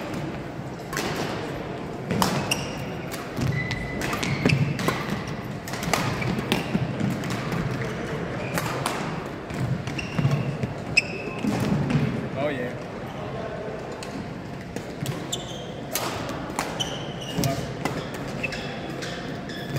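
Badminton singles rally on an indoor sports floor: sharp racket strikes on the shuttlecock, thudding footfalls and short sneaker squeaks as the players lunge, in a large echoing hall with background chatter.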